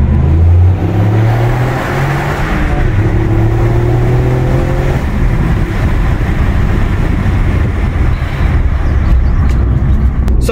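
Toyota GR Yaris's turbocharged 1.6-litre three-cylinder engine under hard acceleration, heard from inside the cabin: its pitch climbs for about five seconds with two short dips in between, then it settles into a steadier engine and road noise.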